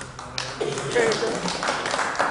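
A person's voice, too indistinct to make out, with several sharp taps among it.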